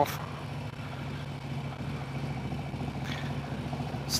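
Touring motorcycle's engine running steadily at low speed in city traffic: a low, even engine note heard from the rider's seat.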